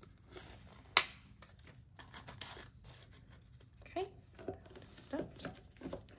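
Paper cash envelopes rustling and sliding as they are handled and filed into a cardboard box, with one sharp tap about a second in. A few brief, faint vocal sounds come near the end.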